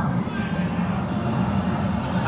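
Steady low rumble of arcade room noise while a claw machine's claw drops into the prizes and lifts away.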